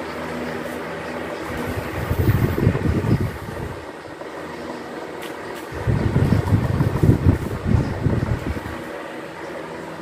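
Several electric standing fans running together, a steady whirring motor hum with faint steady tones. Twice, for a second or three each time, the fans' moving air buffets the microphone in a louder low rumble.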